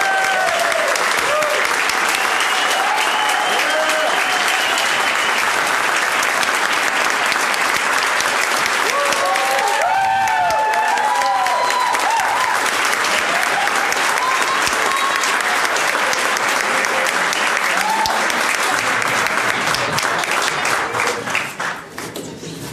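An audience applauding steadily, with cheering voices rising and falling over the clapping; it dies away near the end.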